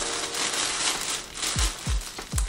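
Clear plastic packaging bag crinkling as it is handled, over background music with a deep kick-drum beat that lands twice near the end.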